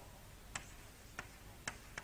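Quiet room tone in a pause between spoken sentences, with three faint short clicks about half a second apart.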